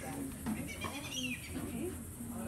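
Indistinct voices of people on the boat, with a few short, high gliding calls in the middle and a steady low hum underneath.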